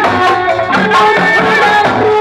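Loud Sundanese folk music accompanying a sisingaan (lion-carrying) dance: hand drums beating steadily under a held, wavering melody line.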